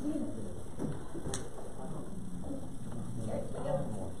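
A congregation getting up from their seats: shuffling and handling noises with a sharp click about a second and a half in, under a low murmur of voices.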